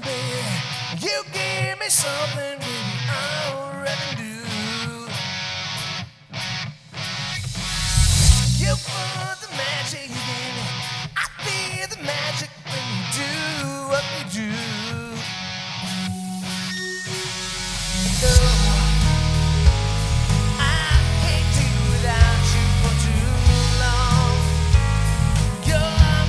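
Rock band playing live, a lead voice singing over guitar with little low end at first. About eighteen seconds in the full band comes in louder, with bass and drums filling out the sound.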